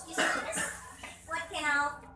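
A woman coughs once, a short hoarse burst, and a woman's voice follows briefly about a second later.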